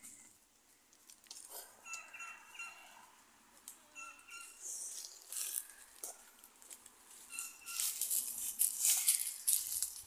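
A small bird chirping in short calls every couple of seconds, with light rustling; the rustling grows louder in the last two seconds or so.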